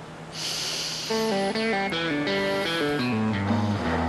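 Soundtrack music: a plucked guitar riff stepping down in pitch note by note, starting about a second in and settling on a low held note, after a short hiss near the start.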